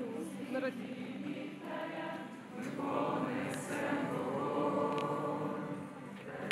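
Choir singing: several voices holding long notes together, swelling louder about halfway through.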